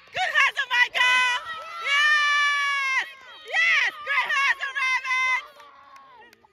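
A spectator's high-pitched, wordless shouting and cheering in a quick run of excited cries, with one long held cry about two seconds in, dying away near the end.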